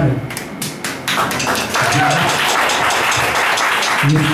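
Small audience clapping steadily, building up about a second in, with a few voices over it.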